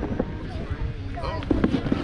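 Snowboard scraping over firm, rutted snow, with several sharp knocks, most of them in a cluster near the end, over a steady low rumble of wind on the helmet camera's microphone.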